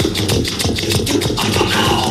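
Music for a rhythmic gymnastics routine, with a fast, steady beat.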